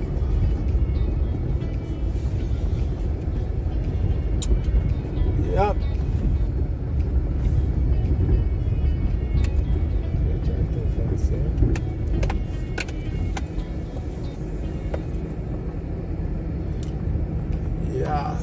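A car driving slowly on a rough gravel road, heard from inside the cabin: a steady low rumble of tyres on loose stone, with occasional sharp knocks and rattles from the body.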